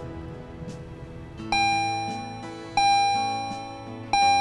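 Two struck bell-like chime notes, one about a second and a half in and one near three seconds, each ringing and slowly fading, over a quiet music bed.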